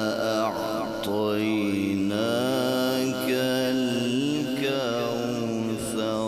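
A male qari reciting the Qur'an in a melodic, ornamented style, drawing out long held notes with quick turns of pitch between them.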